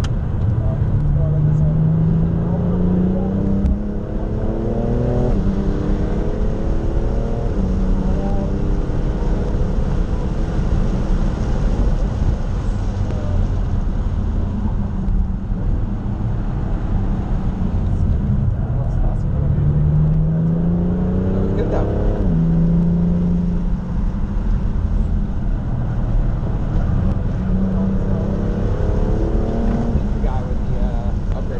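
BMW F80 M3 Competition's 3.0-litre twin-turbo inline-six, heard from inside the cabin at track pace. The engine note climbs under hard acceleration and drops sharply at an upshift twice, about five seconds in and about twenty-two seconds in, then climbs again near the end. Steady road and tyre rumble runs underneath.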